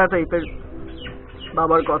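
A man talking, with a few short, high, falling bird chirps in the pause between his phrases, about half a second to a second in.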